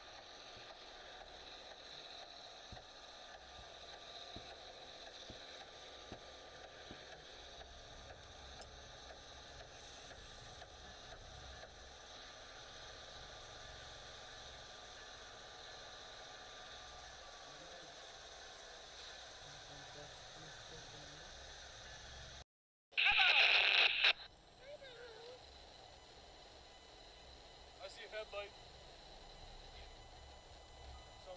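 Railway rotary snowplow at work, a faint steady rush of its blower throwing snow. Near the end of the plume footage the sound cuts out briefly, then a short loud burst follows.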